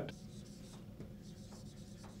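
Dry-erase marker writing a word on a whiteboard: a few faint, short rubbing strokes of the felt tip on the board.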